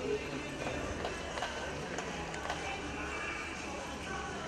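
Arena background of music and indistinct voices, with a cutting horse's hoofbeats in soft dirt as it moves back and forth to hold a calf.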